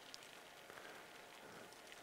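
Near silence: only a faint, steady hiss of background noise.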